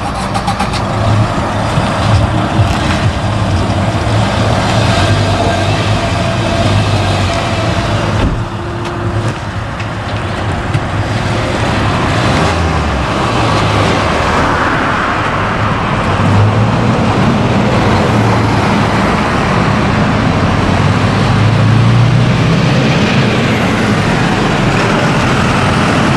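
Motor vehicle engines running steadily by the road, with traffic passing that swells in loudness a few times.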